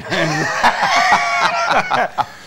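Loud male laughter in quick, high-pitched cackling bursts, lasting about a second and a half.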